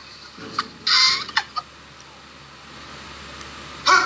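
An emu at a truck's window gives a short, loud squawking call about a second in, with a few sharp taps, like pecking on the door, just before and after it.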